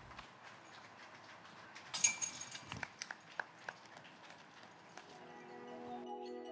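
Faint outdoor course ambience with a brief high jingle about two seconds in and a few light clicks after it, then chiming mallet-percussion transition music fading in near the end.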